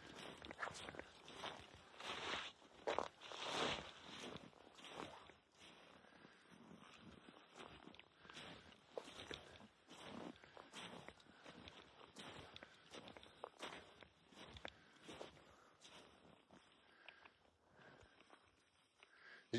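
Footsteps in deep snow: a faint, irregular run of soft steps, louder about two to four seconds in.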